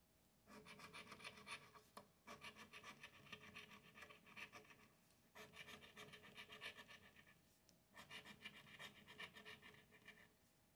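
Coin scraping the coating off a paper scratch-off lottery ticket in quick, rapid strokes, in several spells with short pauses between them.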